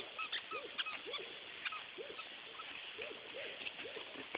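A dog's plush squeaky chew toy, shaped like a furry goldfish, squeaking as the dog bites down on it: short squeaks that rise and fall in pitch, at an uneven rate of about two a second.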